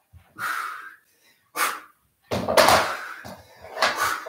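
A man breathing out hard in short puffs while doing crunches, four breaths about a second apart, the third the longest and loudest.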